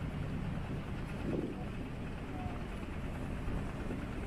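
Steady low rumble of boat engines running as the rafted boats motor forward, with a faint brief swell just over a second in.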